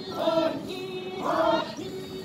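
Chakhesang Naga folk chant sung by a group of dancers in unison: a held low note, broken by a louder sung call about once a second, twice here.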